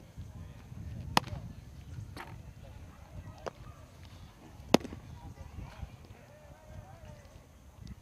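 Baseballs popping into a catcher's mitt: two sharp, loud smacks about three and a half seconds apart, with a few fainter knocks between, over a low rumble.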